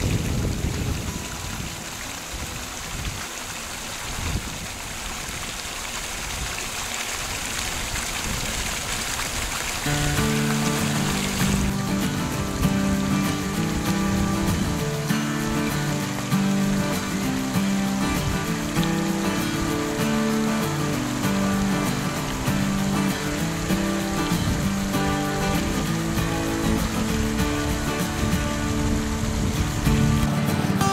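Water rushing through a pump-fed gold-prospecting sluice box and splashing off its end into the river, a steady wash of water. About ten seconds in, background music takes over and runs to the end.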